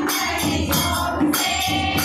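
Group of women singing a Hindu devotional bhajan to the Mother Goddess together, with a dholak drum and hand clapping keeping about two beats a second.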